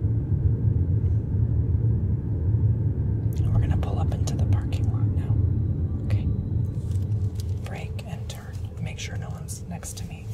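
Steady low rumble of a Jeep driving slowly, heard from inside the cabin, easing off a little in the last few seconds.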